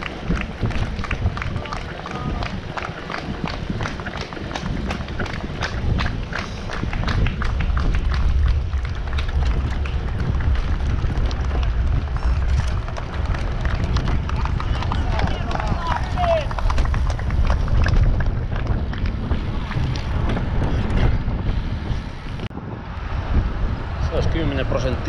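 Wind buffeting a bike-mounted camera microphone, with tyre and road noise from road bikes riding in a group. Scattered clicks and knocks from the road surface and bike run through it.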